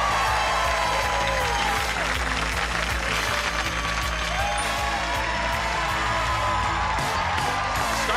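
Television game-show theme music with studio-audience applause over it, held at a steady level throughout.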